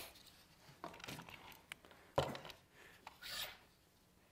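Faint handling of red plastic parallel-clamp accessory pads: soft taps about a second in, a sharp click a little after two seconds, and a short scraping rub about a second later.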